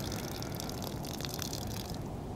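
A person urinating: a steady stream of liquid splashing, which stops at the end.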